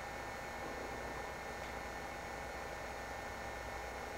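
Room tone: a steady low hiss with a faint hum underneath and nothing else happening.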